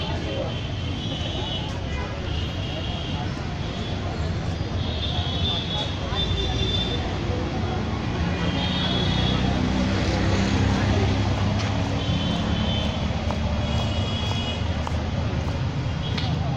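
Busy street ambience: a steady traffic rumble, with an engine hum that swells and fades in the middle, and people talking in the background.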